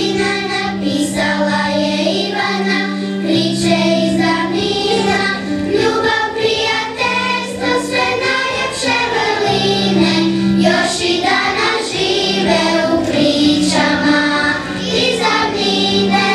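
A song sung by children's voices together, over instrumental accompaniment with long held low notes.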